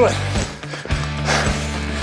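Background music with a steady bass line and beat. About one and a half seconds in, a short hard breath from a man running up a steep hill.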